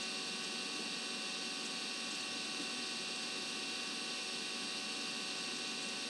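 Steady electrical hum and hiss, with several faint steady tones and no change or sudden sounds: the background noise of the recording during a pause in narration.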